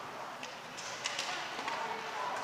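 Ice hockey rink ambience during live play: a steady low hiss with a few faint clicks from sticks and puck on the ice.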